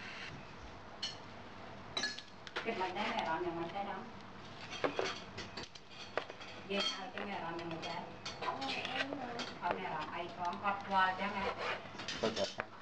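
A steel knife slicing braised pork ear on a plastic cutting board, with repeated taps and scrapes of the blade on the board and a metal fork clinking. Indistinct talking runs underneath for stretches.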